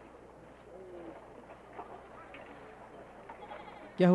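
Faint farmyard background with a few soft animal calls, the clearest about a second in.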